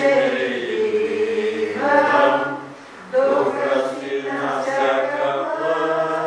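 Several voices singing together, like a choir, in long held phrases over a low sustained note, with a brief pause near the middle.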